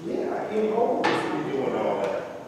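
Indistinct voices talking, with a sharp click about a second in.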